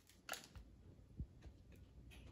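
Faint sounds of biting into and chewing an iced cake doughnut: a sharp click just after the start and a soft low thump about a second in.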